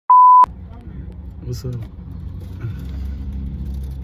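A loud steady electronic bleep tone, about a third of a second long, at the very start. It is followed by the low, steady rumble of a car cabin.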